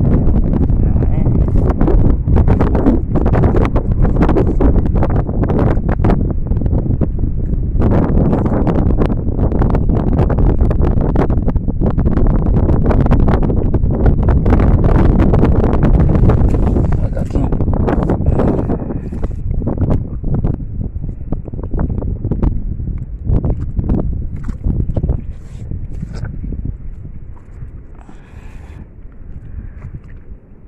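Wind buffeting a phone microphone, over scraping, knocking and handling noise from digging into mangrove mud by hand after a burrowing crab. The noise grows quieter over the last ten seconds or so.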